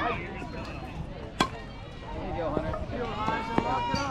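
A single sharp crack of a bat hitting a ball off a batting tee about a second and a half in, followed by voices shouting and cheering that grow louder toward the end.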